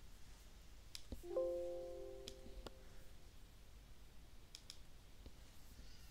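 Faint, scattered computer mouse clicks. About a second in, a short chime of several tones sounding together rings out and fades over a second or so; it is the loudest sound here.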